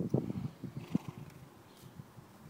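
A horse blowing out hard through its nostrils: one fluttering snort of rapid low pulses, lasting about a second.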